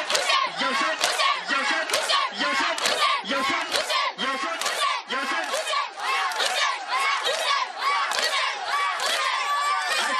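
A large crowd of men chanting and shouting together, with sharp rhythmic strikes about twice a second: Shia matam, mourners beating their chests in time with the chant.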